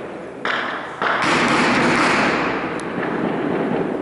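A sudden thud a little under half a second in, then a louder blast about a second in whose noise rolls on for about two seconds and slowly fades. A single sharp crack sounds near the end of that decay.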